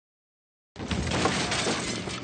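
A sudden loud crash with shattering and breaking noise, starting about three-quarters of a second in out of silence and lasting more than a second.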